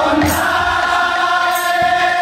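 Group of men singing a devotional kirtan chant together, holding a long sustained note over a harmonium drone, with a stroke or two on a khol barrel drum near the start and near the end.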